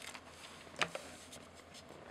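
Faint handling noise in a quiet room: a few light clicks and taps, the clearest about a second in, as hands move sensor-cleaning tools and the camera.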